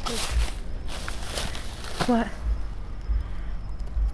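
Thin plastic produce bags rustling and crinkling in short bursts as they are handled, over a low rumble of handling noise on the microphone.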